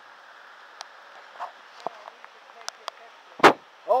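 Rain falling steadily on foliage and the paved trail, with scattered sharp ticks of drops, and a single loud thump about three and a half seconds in.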